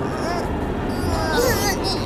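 Short, high cartoon-creature cries and squeaks, mostly in the second half, over a steady rumbling bed of background music and sound effects.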